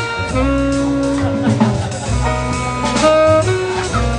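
Live small-group jazz: a tenor saxophone solos in long held notes over upright bass and drum kit.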